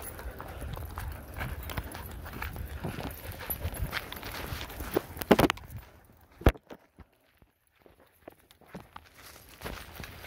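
Footsteps crunching on a gravel path with a low rumble under them, then a few sharp knocks about five and six and a half seconds in. The sound drops almost to nothing for a couple of seconds, and faint steps return near the end.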